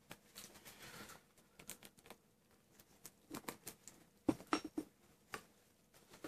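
Faint handling of a cotton parka: a soft rustle, then scattered light clicks and ticks as its zip is done up and its front buttons are fastened.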